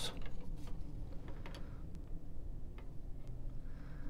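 Faint, scattered small clicks and taps of handling: blue plastic control-rod tubing being fed through a freshly drilled hole in a small plywood former.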